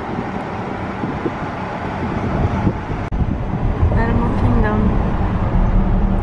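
Steady road and wind noise inside a moving car. A sharp click about halfway through, after which the low rumble of the car grows louder.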